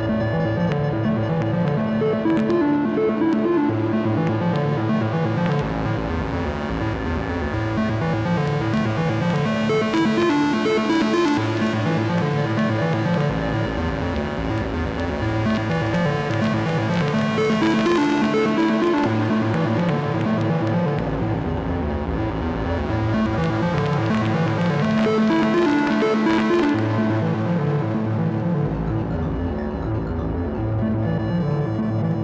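Live electronic synthesizer music from a Vermona PERfourMER MKII analog synth: layered sustained tones over a low bass that changes note every few seconds, with bright hissy swells rising and fading several times.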